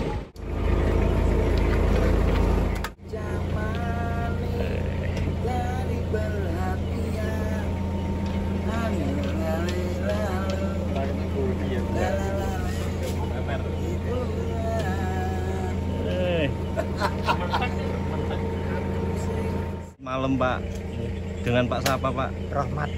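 Men's voices talking over a steady low hum, with a louder low rumble in the first three seconds.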